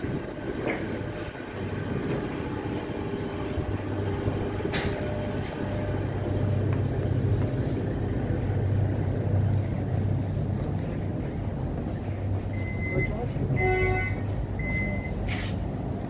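A suburban electric train standing at the platform with a steady low hum. Near the end, door-closing warning beeps sound: a short high tone, a brief chord, then the high tone again, followed by a sharp knock.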